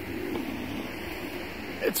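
A man's low, drawn-out hesitation sound, a held 'mmm' or 'uhh' that wavers slightly in pitch, over a steady hiss of outdoor background noise.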